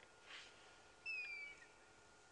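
A single short, high whistled animal call, falling slightly in pitch, about a second in, over a faint steady high hum. A brief soft rush of noise comes just before it.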